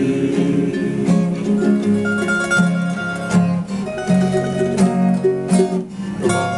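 Acoustic guitars and a smaller plucked string instrument playing an instrumental passage, a quick run of plucked notes over the chords.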